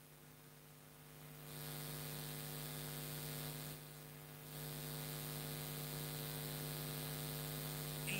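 Public-address system hum and hiss: a steady electrical buzz, with a hiss that swells about a second and a half in, drops briefly in the middle and comes back.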